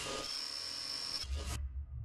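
Electronic glitch sound effect for a logo animation: a hiss of noise with a thin, steady high whine that cuts off suddenly about one and a half seconds in, leaving a low rumble.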